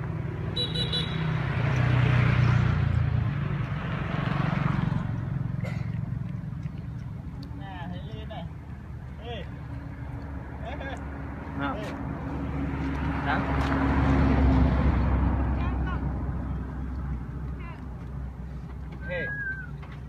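Road traffic: two vehicles pass one after the other, each a swell of engine and tyre noise that builds and fades, the first about two seconds in and the second about fourteen seconds in.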